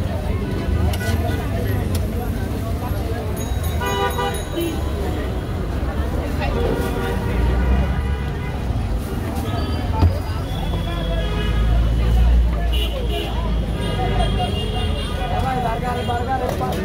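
Busy street traffic, a steady low rumble of vehicles, with a horn honking about four seconds in and more horn toots later, over background voices.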